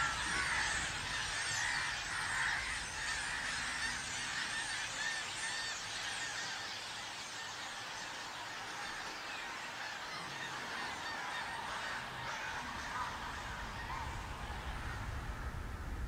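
Faint movie soundtrack: a dense, busy chorus of many short high calls overlapping one another.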